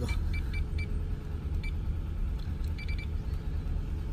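Short electronic key beeps from a Yazaki taxi-meter handy terminal as its buttons are pressed, about seven of them in uneven groups, over a low steady rumble.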